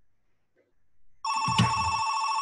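Near silence, then about a second and a quarter in an electronic telephone starts ringing suddenly, a steady warbling trill.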